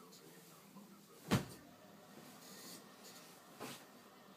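A sharp thump about a second in and a smaller one near the end, with faint soft rustling between them, as someone shifts under a thick comforter on a bed.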